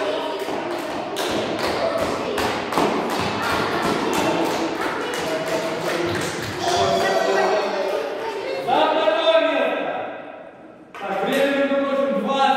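Rhythmic clapping, about three claps a second, mixed with voices in a large gym hall. The clapping gives way to voices about six seconds in, with a short lull near the end.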